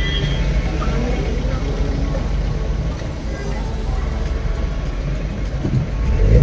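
A car's engine running low and steady, heard from inside the cabin as a constant low rumble, with faint voices in the background.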